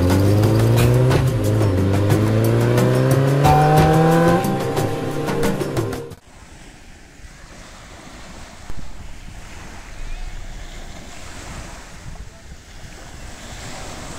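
For the first six seconds, an engine accelerating hard, its pitch rising steadily with a step up about a second in, over music. It cuts off suddenly to the steady wash of small waves breaking and running up a pebble beach, with a louder surge near the two-thirds mark.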